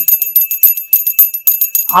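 Small metal hand bell shaken and rung rapidly: a steady high ring with quick, repeated clapper strikes.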